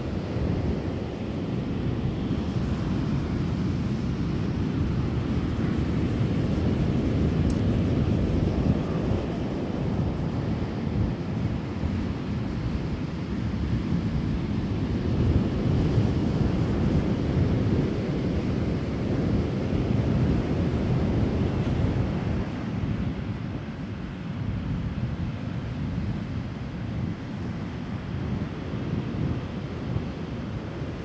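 Wind buffeting the phone's microphone in a steady low rumble, with the wash of ocean surf under it; it eases a little in the last third.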